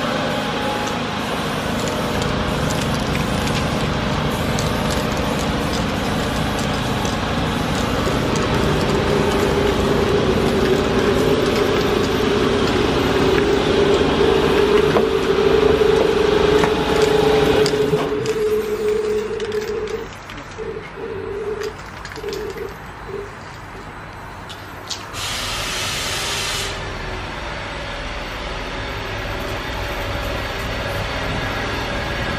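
Train noise: a steady rushing with a hum that grows louder, then cuts off suddenly about 18 seconds in. It is followed by a quieter, choppy stretch and a short hiss near the end.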